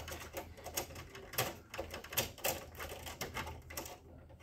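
Irregular plastic clicks and taps from gloved hands working at parts inside the open rear of an HP LaserJet M607 printer, over a faint low steady hum.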